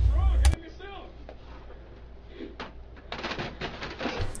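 A low hum that cuts off with a click about half a second in, then, from about three seconds in, a run of short plastic clatters as the paper tray of a Dell 5330dn laser printer is slid back into its slot.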